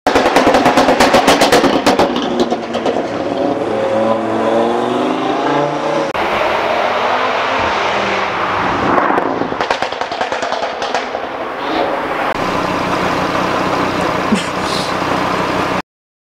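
Audi RS3's turbocharged five-cylinder engine with a Stage 2 pop-and-bang remap: rapid exhaust pops and crackles for the first two seconds, then revving up and down. The sound comes in short cut-together bursts and stops abruptly near the end.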